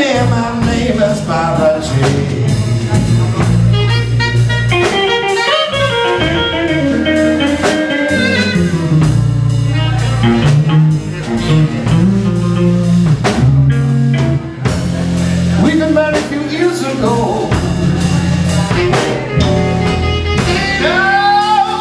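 Live blues band playing: a man singing over semi-hollow electric guitar, electric bass, a drum kit and saxophone.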